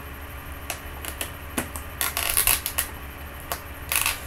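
Clear plastic blister packaging crackling and clicking in the hands in irregular bursts, busiest a little past halfway, as it is flexed and pried to free a small figure's cap stuck inside.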